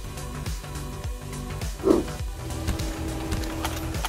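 Background music with steady held notes, and a short sweeping sound about halfway through.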